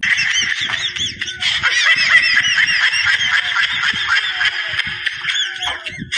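Basketball shoes squeaking on a hardwood court during live play: many short, high squeaks rising and falling in quick overlapping succession, with scattered low thuds underneath.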